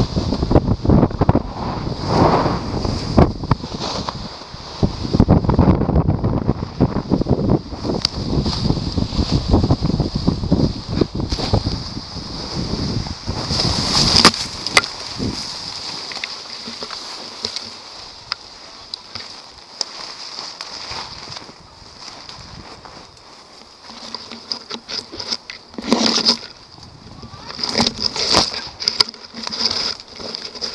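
Wind rushing over the helmet microphone during a descent under a reserve parachute. About halfway through, the pilot crashes into the tree canopy with a loud burst of snapping branches and leaves. After that, foliage and branches rustle and scrape, with a few sharper cracks near the end.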